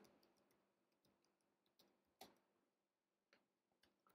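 Near silence with a few faint, scattered clicks of typing on a computer keyboard.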